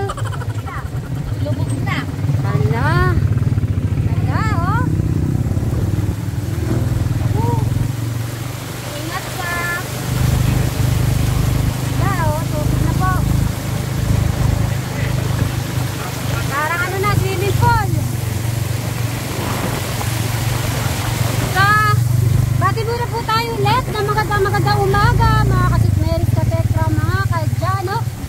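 Motorcycle tricycle engine running steadily as the tricycle travels, dipping briefly partway through, with people's voices over it.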